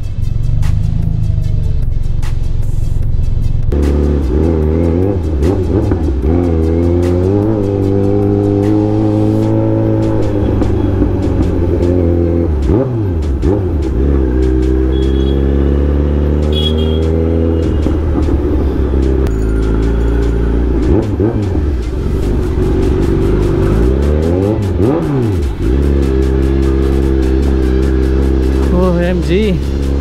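Kawasaki Z900's inline-four engine running at low speed, its exhaust note dipping and climbing again twice as the throttle is rolled off and back on, with background music over it.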